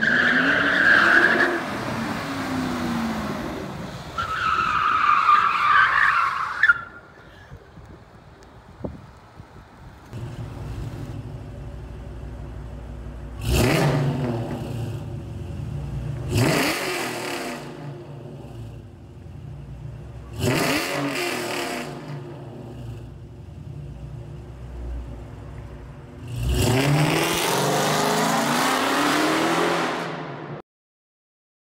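A 2010 Mustang GT's 4.6 L V8 driven hard with the tires squealing for the first several seconds. Later, inside a concrete parking garage, it gives three sharp revs a few seconds apart, each rising in pitch, then a long hard acceleration near the end.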